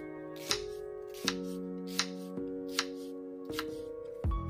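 Chef's knife slicing through a red onion onto a plastic cutting board: five evenly paced cuts, about one every three-quarters of a second. Background music with sustained notes plays throughout.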